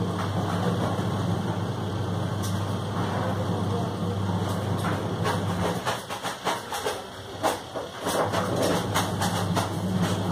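A steady low hum that drops out for about two seconds past the middle, with scattered faint clicks and voices over it.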